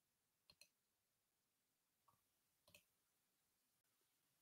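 Near silence: room tone with a few very faint clicks, a pair about half a second in and more near the three-second mark.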